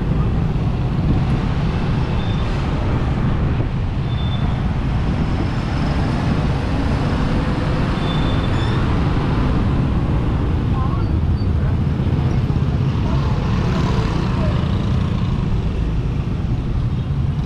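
Motorcycle riding through town traffic, heard from the rider's camera: a steady low rumble of engine, road and passing vehicles, with a few faint short high tones.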